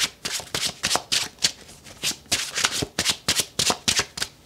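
A deck of tarot cards being shuffled in the hands: quick, crisp papery strokes of cards sliding and slapping together, about three a second.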